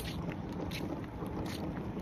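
Wind buffeting the phone's microphone: a steady, low rumbling noise.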